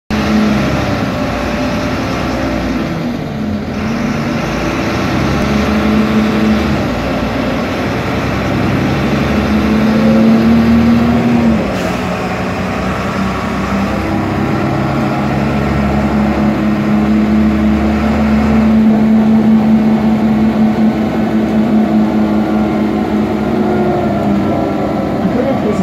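Ikarus 412 city bus heard from inside the passenger cabin while under way: a steady diesel drone with road noise. The engine note climbs a little, then drops abruptly about twelve seconds in, a gear change, and settles into a steady note again.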